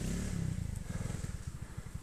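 Trials motorcycle's single-cylinder engine running at low revs with a steady low putter, about a dozen beats a second.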